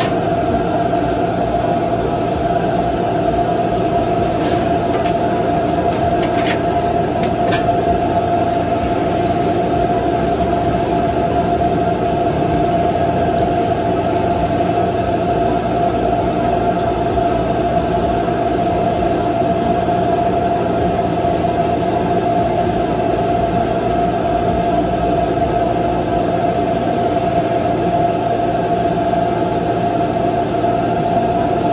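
Steady machine drone of equipment running inside a food trailer, with a constant mid-pitched whine over a low rumble. A few faint clicks sound about five to eight seconds in.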